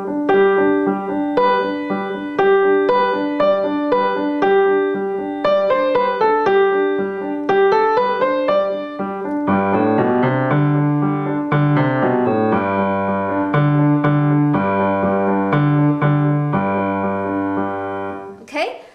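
Young Chang grand piano played with both hands: the left hand repeats G and D, the root and fifth, in a steady pulse while the right hand improvises a melody on the G scale. About ten seconds in, the repeated low notes move down to a lower register.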